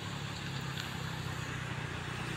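Steady low hum of a motor vehicle engine in the background, with faint outdoor noise.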